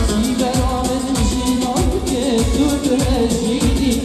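Live Kurdish pop-folk music: a male singer with a band, keyboard and plucked strings, over a steady drum beat of about one hit every 0.6 seconds.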